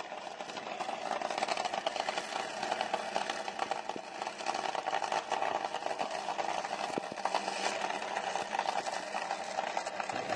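Two Top Fuel dragsters' supercharged nitromethane V8 engines idling after their burnouts, a steady, fast, rattling crackle.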